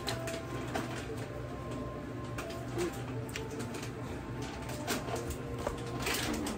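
Quiet sounds of someone chewing a mouthful of soft cloud bread, with scattered small clicks over a steady low hum.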